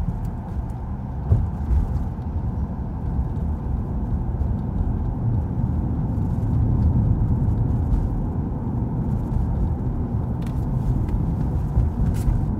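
Steady low rumble of a car's engine and tyres on the road, heard from inside the moving car, with a single thump about a second in.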